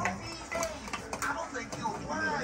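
Indistinct background voices: people talking over one another in a room.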